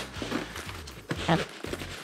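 Fabric rustling and a few soft knocks as the flap of a Nomatic Luma 9-litre camera sling bag is handled and opened by hand.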